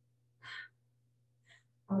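A woman's short, audible breath in through the pulpit microphone about half a second in, with a fainter second breath a second later, over a faint steady low hum; speech begins right at the end.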